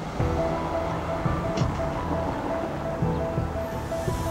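Background music: a short high note repeating about four times a second over low held tones.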